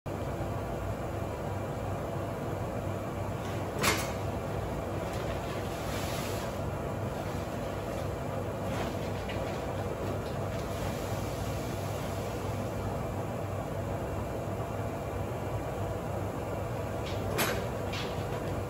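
Vertical feed mixer running with a steady drone as feed is bagged from its discharge chute. Two sharp knocks stand out, one about four seconds in and one near the end.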